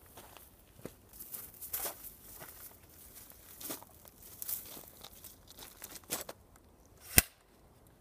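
Faint rustling and light handling noises of a person picking up a small semi-automatic rifle, with one sharp click about seven seconds in.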